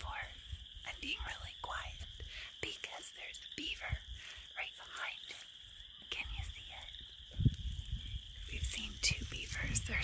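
A woman whispering. Behind her runs a steady, high-pitched background drone.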